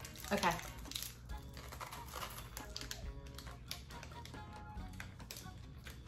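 Crisp crunching of a hazelnut wafer bar being bitten and chewed: scattered small crackling clicks. Faint background music plays underneath.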